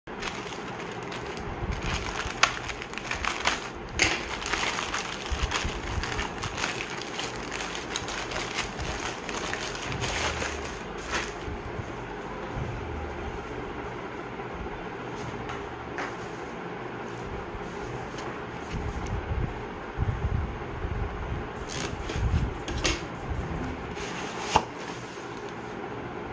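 Plastic courier mailer bag crinkling and rustling as it is handled and opened, with several sharp clicks, then a cardboard product box being turned and handled, with low knocks and thuds near the end.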